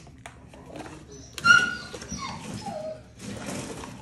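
A crate-training dog gives a sharp, high yelp about a second and a half in, followed by two whines that fall in pitch.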